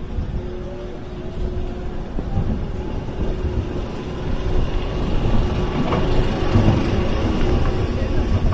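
Titan's steel roller coaster train rolling along the track with a steady wheel rumble. A whine rises in pitch over the first few seconds, and the rumble grows louder toward the end as the train moves onto the lift hill.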